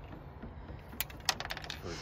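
Several light clicks and taps of something being handled, two sharper ones about a second in, over a low wind rumble on the microphone.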